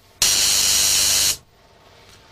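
Spark gap of a high-frequency, high-voltage generator sparking between two metal balls, a loud hiss with a low hum beneath, exciting a nearby fluorescent tube with no wires attached. It drops out for a moment at the start, comes back, and cuts off suddenly a little over a second in.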